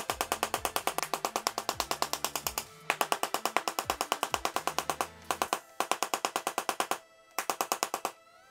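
Handheld Tesla coil discharging in rapid, evenly spaced spark pulses, about ten a second, stopping briefly three times.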